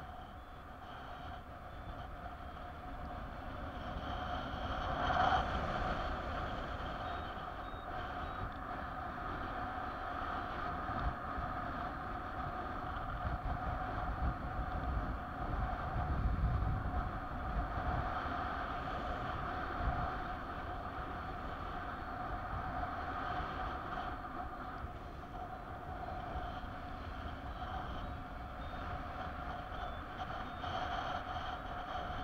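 Rushing airflow and wind buffeting on the camera's microphone in paraglider flight: a steady rush with a low, gusty rumble that swells about five seconds in and again around the middle.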